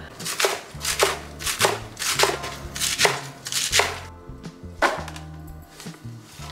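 Chef's knife chopping romaine lettuce on a bamboo cutting board, about two chops a second, stopping about four seconds in, with one last knock a second later. Soft background music plays underneath.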